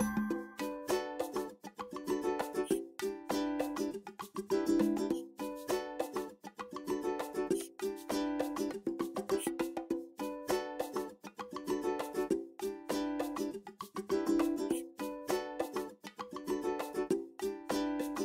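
Background music: a light tune of short notes over a steady, even beat.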